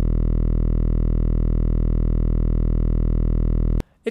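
Synthesized 40 Hz variable-duty sawtooth wave (SuperCollider VarSaw, duty cycle 0.05) sounding as a steady, low, buzzing tone rich in harmonics. It cuts off suddenly with a click near the end as the synth is freed.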